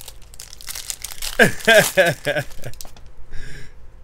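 Foil wrapper of a trading-card pack crinkling and tearing as it is ripped open by hand, with a man's voice breaking in loudly over the middle in a few short falling sounds.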